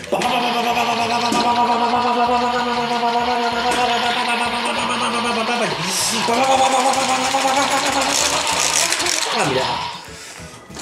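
Electronic sound effects and jingle played through the small speaker of a toy transformation blaster: long, steady pitched sounds that break off briefly about six seconds in, then carry on until just before the end.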